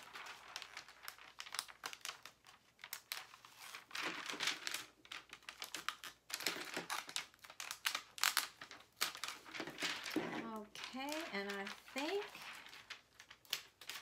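Cricut Infusible Ink transfer sheet crinkling and crackling in the hands as the cut excess is bent and peeled off its clear plastic liner during weeding. The sound comes in many short, irregular crackles.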